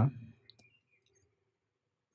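A man's voice trailing off at the end of a phrase, then a pause of near silence in a quiet room with one faint click.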